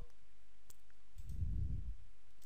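A couple of faint computer mouse clicks, less than a second in, followed by a soft low rumble lasting about half a second.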